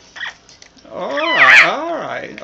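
Double yellow-headed Amazon parrot giving a loud, warbling call whose pitch swings up and down in waves, starting about a second in.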